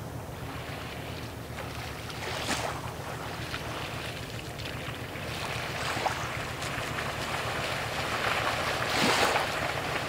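Low, steady rumble of a passing bulk carrier's engine across the water, under a rushing noise of wind and water. The rushing swells louder twice, about two and a half seconds in and again near the end.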